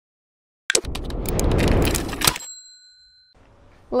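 Intro logo sound effect: a short burst of crackling, clicking noise, then a bell-like ding that rings for about a second and stops.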